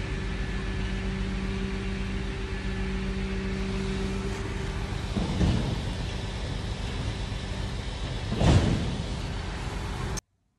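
Steady low rumble of motor vehicle noise, with a steady hum that stops about four seconds in and two louder swells, about five and eight and a half seconds in, like vehicles passing.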